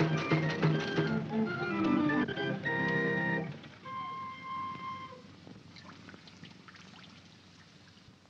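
Carnival music with a drum beat plays, then breaks off about three and a half seconds in. A single held note sounds briefly, then all dies away to quiet with a few faint clicks, as the fairground goes silent.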